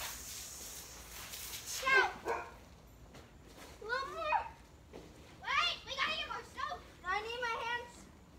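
Children's high voices calling and shouting in short bursts during play, several times. In the first second there is a hiss of water spraying from a garden hose.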